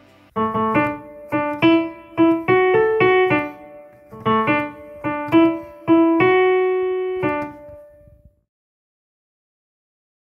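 A short melody played one note at a time on an electronic keyboard with a piano sound. It comes in two runs of notes, the second ending on a long held note that dies away about eight seconds in.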